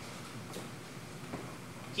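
A pause in a man's speech: quiet room tone, a steady faint hiss with no distinct event.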